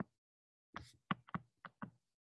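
Faint short taps of a stylus on a tablet screen during handwriting. There is one tap at the start, then an uneven run of about seven more from just under a second in.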